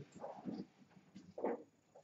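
Faint, short vocal sounds from a person, a murmur or groan, the clearest a brief one about one and a half seconds in that rises and falls in pitch.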